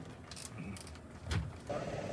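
Low road rumble inside a moving car's cabin, with a short knock about a second and a half in. Near the end a steady hum with a pitched tone takes over: the cabin of a passenger plane.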